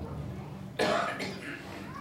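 A single short cough about a second in, sudden and then fading quickly.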